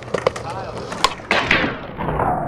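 Skateboard wheels rolling on concrete with a few clicks, then about a second and a half in a sharp pop as the board goes onto a metal handrail and its deck starts scraping along the rail in a boardslide.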